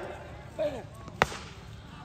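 A single sharp crack of a cricket bat striking the ball, a little past halfway: a clean hit that goes for six.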